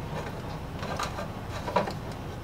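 A few light plastic clicks and knocks as a cap is fitted onto the top of an upright PVC tube, the sharpest knock near the end, over a steady low hum.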